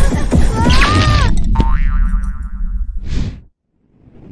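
Cartoon soundtrack: background music with a steady beat and a springy boing sound effect about a second in, followed by a held tone. A short swish comes near the end, then the sound cuts out abruptly.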